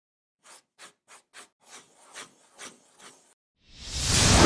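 Sound effects for an animated logo intro: a run of faint short swishes, four quick ones and then four slower ones, followed near the end by a whoosh that swells and grows loud.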